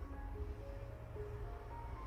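Soft background music: a slow melody of single mallet-like notes, one after another, stepping up and down.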